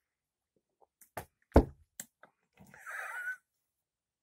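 A few light knocks and one loud dull thump about one and a half seconds in, then a short breathy vocal sound with a wavering pitch near the end: a person handling a glass and reacting after a first sip.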